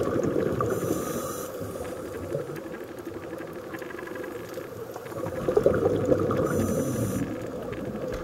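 Scuba regulator breathing recorded underwater. A short high hiss of inhalation comes about a second in and again near the end, over a constant rumbling bubble noise of exhaled air that is loudest in the second half.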